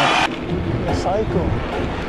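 A voice cuts off abruptly just after the start. It leaves wind buffeting the microphone of a handlebar-mounted camera on a moving bicycle, with brief voice sounds over it.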